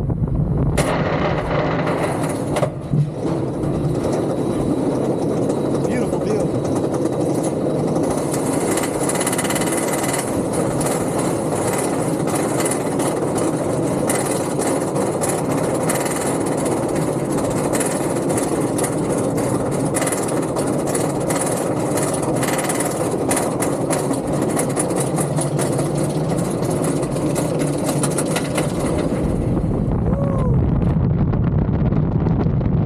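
Roller coaster train climbing its lift hill: a steady mechanical rumble with a long run of rapid clacks from about eight seconds in, typical of the anti-rollback on a chain lift. The clacks stop shortly before the end as the train crests.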